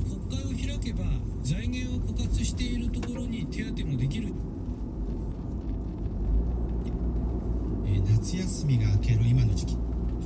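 Car cabin road noise while driving: a steady low rumble from the moving car, with a voice speaking in stretches over it.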